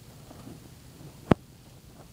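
A single sharp knock about a second and a half in, over faint handling noise.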